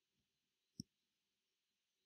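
Near silence with one faint, short click of a computer mouse button about a second in, as the dragged image file is dropped.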